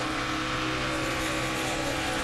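Onboard audio of a NASCAR Nationwide Series stock car's V8 engine at racing speed, a steady drone that holds one pitch, with road and wind noise behind it.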